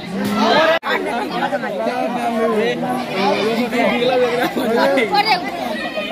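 Many voices talking at once: a crowd of students chattering, with a momentary break in the sound about a second in.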